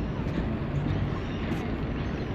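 Steady outdoor city background: a low, even rumble of distant traffic with no distinct events.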